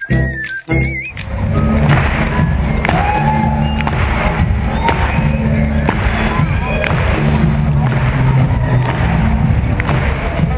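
Music with a whistled tune for about the first second, then an abrupt change to live gymnasium sound: the steady din of a crowd at a basketball show, with music over the PA system.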